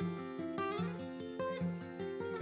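Background music: a fingerpicked acoustic guitar playing a steady run of plucked notes.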